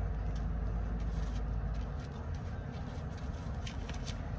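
Steady low rumble inside a car's cabin, the engine idling with the air conditioning running, with a few faint ticks. The lowest part of the rumble eases about halfway through.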